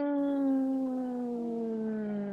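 A person's voice holding one long drawn-out vowel for about three seconds, its pitch slowly sinking, like a hesitant 'ehhh' in reply to a question.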